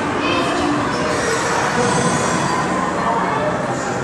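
Voices over a continuous, dense background drone that holds a steady level throughout.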